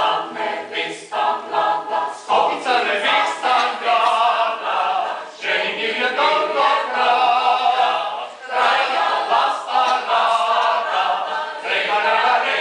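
Mixed choir of men's and women's voices singing a cappella, in sung phrases with brief breaks about two, five and a half, and eight and a half seconds in.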